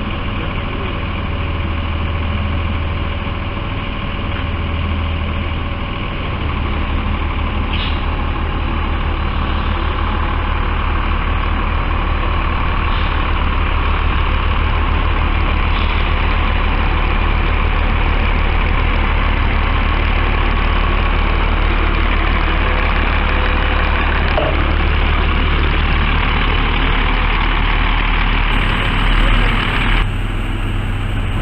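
Large bus-style motorhome's engine running with a deep, steady rumble, idling at first and then pulling away slowly from about six seconds in as it moves toward the ferry ramp.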